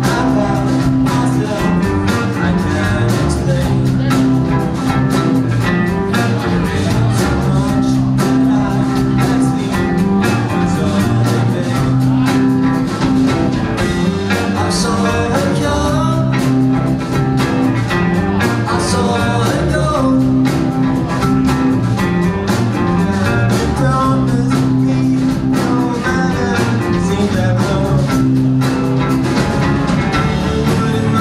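Live pop-rock band playing with drum kit, bass guitar and guitars through a PA, with a steady drum beat under sustained bass notes.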